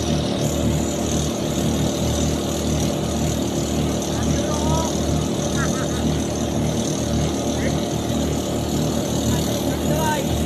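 Outrigger boat's engine running steadily under way, a constant low drone with no change in speed.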